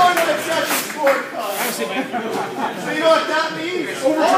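Indistinct chatter of several people talking at once in a gym hall, with a few brief sharp sounds.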